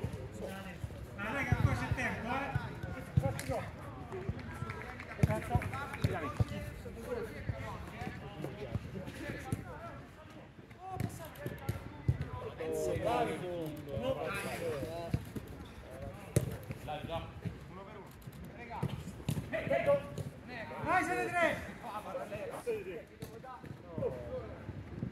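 Players' voices calling out on a five-a-side pitch, mixed with the occasional dull thud of a football being kicked.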